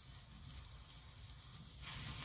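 Red bamboo-stick sparklers burning with a faint, steady sizzle that grows a little louder near the end.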